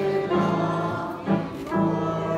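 A mixed choir singing with grand piano accompaniment, holding sung notes that change about every half second.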